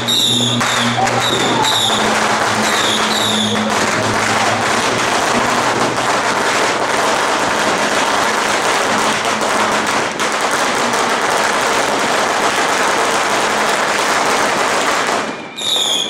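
A long string of firecrackers going off in a dense, continuous crackle, building a second or two in and stopping shortly before the end.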